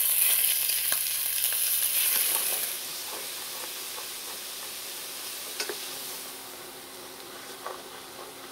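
Raw chicken pieces sizzling in hot canola oil in a stainless steel skillet while being stirred with a silicone spoon, with a few light scrapes against the pan. The sizzle drops quieter about three seconds in.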